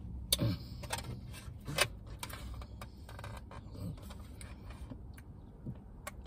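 Eating sounds: a plastic spoon clicking and scraping against a dish of ice cream, with short mouth sounds, in a series of small irregular clicks over a low steady hum.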